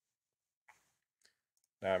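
Near silence broken by a few faint, short clicks of a computer mouse, the loudest about a third of the way in; a man's voice starts just before the end.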